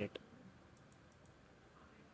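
A single computer mouse click just after the start, followed by a few faint high ticks over low room tone.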